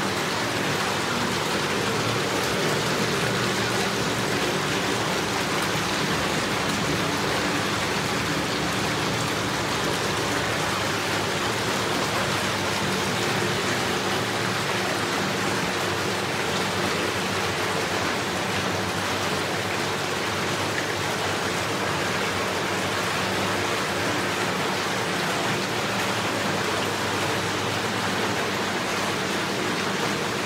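Corner spa bath with its jets running, the water churning and bubbling steadily, with a steady low hum beneath it.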